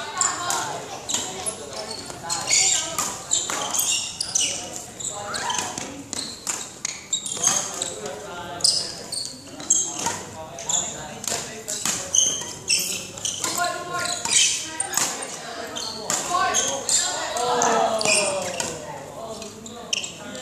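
Badminton shadow footwork on a hard indoor court floor: quick footsteps, lunge stamps and shoe squeaks in an irregular, rapid series, echoing in a large hall.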